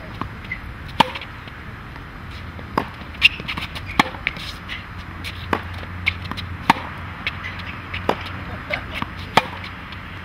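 Tennis ball struck by a racket and bouncing on a hard court in a rally of forehands: sharp pops, roughly one a second, some louder than others.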